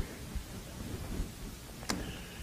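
Faint room tone with a steady low hiss, broken by one short click near the end.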